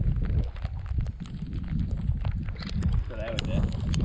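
Wind buffeting the microphone, a steady low rumble, with scattered small clicks over it and a brief faint voice about three seconds in.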